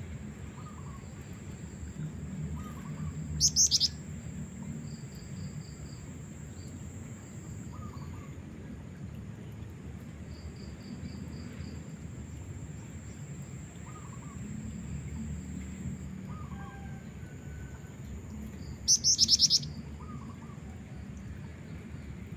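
Black-winged flycatcher-shrike (jingjing batu), a female, giving two short, loud, high trills about fifteen seconds apart, with faint chirps and a steady high insect drone behind.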